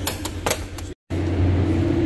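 Three sharp knocks over a low steady hum, then a short dead gap about a second in, after which the low steady hum carries on alone.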